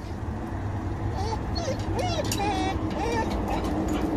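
A dog whining and whimpering in a string of short rising and falling cries, the greeting noises of an excited dog, over a steady rumble of road traffic.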